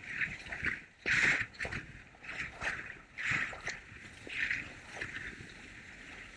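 Völkl skis scraping and carving on firm groomed snow: a hissing scrape that swells with each turn, several times, the strongest a little over a second in.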